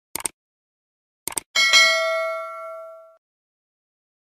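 Subscribe-button sound effect: two quick double mouse clicks, then a bright notification-bell ding that rings out for about a second and a half.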